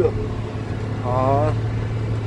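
JCB Fastrac 3230 tractor engine running with a steady low drone, heard from inside the cab.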